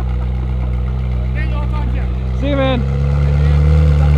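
Ferrari 458 Spider's V8 engine running steadily at low revs while the car creeps along, getting louder toward the end. A voice is heard briefly in the middle.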